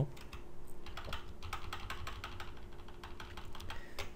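Computer keyboard typing: scattered, irregular keystrokes.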